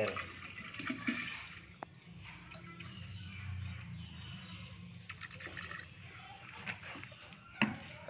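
A steady stream of apple cider vinegar poured from a plastic bottle into a plastic drum of water, splashing into the water's surface.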